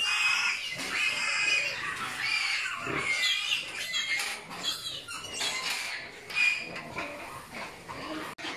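Pigs squealing: a steady run of short, high-pitched squeals.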